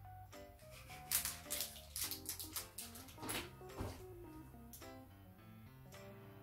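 Background music with held notes, with a few short clicks about one to three and a half seconds in.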